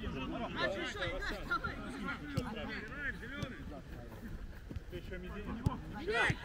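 Footballers' voices calling and shouting across a grass pitch during a passing drill, with a few sharp thuds of a football being kicked, one near the start, one a little before halfway and one near the end.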